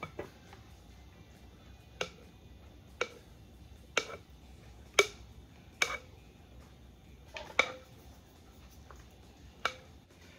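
A series of sharp light knocks and clicks, about one a second with a quick pair near the end, from a mixing bowl and utensil knocking as thick whipped strawberry ice cream mixture is poured and scraped into a metal loaf pan.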